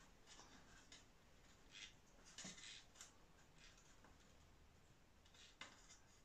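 Near silence, with a few faint, short scratches and ticks of fingers working a small metal clevis onto an aileron pushrod.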